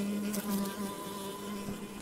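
Honeybees buzzing at an open beehive: a steady hum that holds one even pitch.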